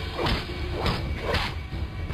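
Film fight sound effects: three quick whooshes of fast strikes, about half a second apart, with dull hits.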